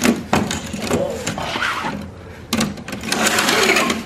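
A curtain being pulled open by hand along its track, the runners sliding and rattling in an uneven run with many small clicks.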